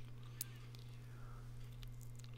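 Quiet, steady low hum with a faint click about half a second in.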